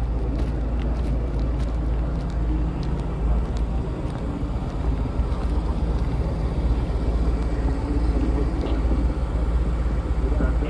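Outdoor street noise: a steady low rumble of traffic on a town street, with a few faint clicks in the first couple of seconds.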